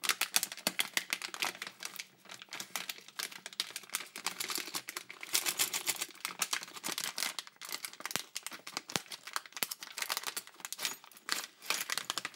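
Crinkling and rustling of a plastic anti-static bag full of electronic kit components as it is handled and shaken, with two sharper clicks about two-thirds of the way through.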